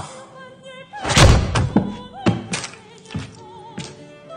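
A series of heavy thuds and knocks, the loudest about a second in, over film-score music with operatic singing.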